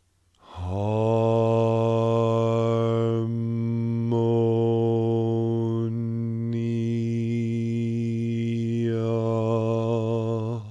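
A low male voice intones "harmonia" as one long held note on a single pitch, starting about half a second in and lasting about ten seconds. The vowel sound shifts several times while the pitch stays the same.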